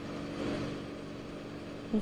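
Steady outdoor background noise with a low, even hum, like a vehicle engine running, picked up by a live field microphone.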